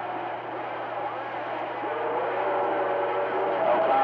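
CB radio receiving on channel 28: muffled voices come through the radio's speaker with a steady low hum, and the sound cuts off sharply above the voice range. The signal grows louder toward the end.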